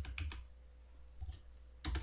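Faint, spaced-out keystrokes on a computer keyboard: a few at the start, one about a second in, and more near the end.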